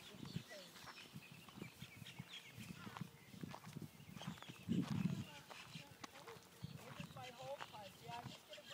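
A horse walking with a child on its back, its hooves falling softly and irregularly on grass and gravel, with a louder low thump about five seconds in. Faint indistinct voices come and go.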